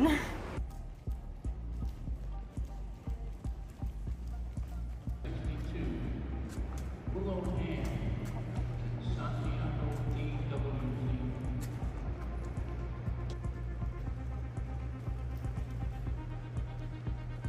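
Music and indistinct voices over the steady low hum of a large indoor riding arena.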